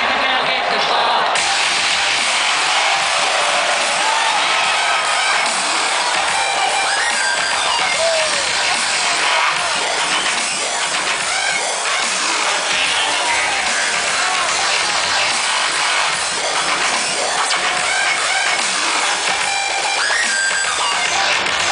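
Electronic dance music from a live DJ set played loud over a festival stage sound system, with little bass coming through, and the crowd shouting and cheering over it.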